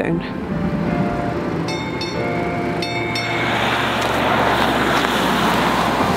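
Street traffic noise with a road vehicle going by, growing louder over the last few seconds. There are a few brief high tones about two and three seconds in.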